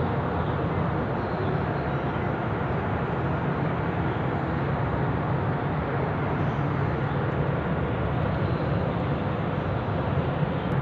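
Steady low rumble and hiss of indoor room ambience, even throughout, with no distinct events.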